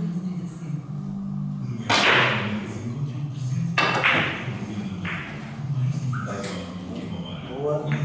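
A carom billiards shot: the cue tip strikes the cue ball sharply about two seconds in, followed over the next few seconds by several sharp clicks of the ivory-white, yellow and red balls striking one another and the cushions.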